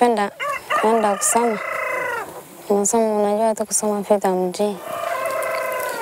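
A rooster crowing: one long, held call starting about a second in, with a second wavering call near the end.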